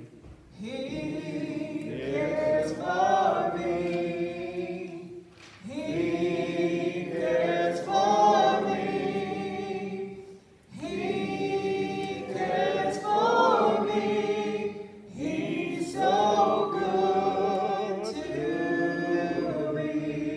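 Church congregation singing a hymn unaccompanied, led by a woman singing into a microphone, in phrases of about five seconds with short breaks for breath between them.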